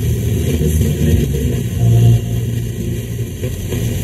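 Vehicle engine and road noise heard from inside the cab while driving, a steady low rumble.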